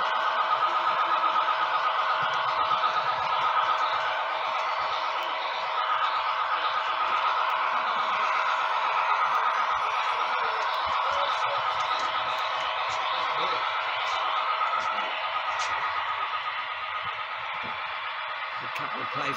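HO-scale model diesel locomotive running along the track with tank cars in tow: a steady mid-pitched mechanical hum with a fast, fine ripple. It fades somewhat toward the end.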